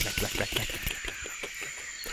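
A quick, irregular run of small clicks and tocks that thins out toward the end, over steady high insect chirring.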